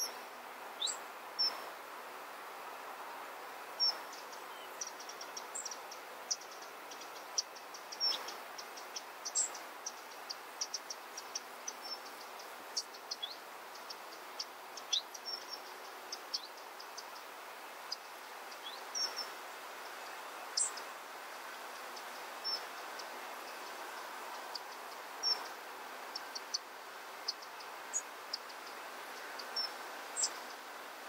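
Hummingbirds chipping: dozens of short, high chips scattered irregularly, some with a quick downward slur, over a steady background hiss.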